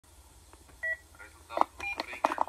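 Two short electronic beeps, each two tones sounding together: one just under a second in, a higher-pitched one near the end. A brief voice-like sound falls between them.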